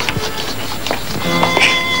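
Film background score: sustained instrumental notes come in a little over a second in, over a steady hiss with a few light clicks before them.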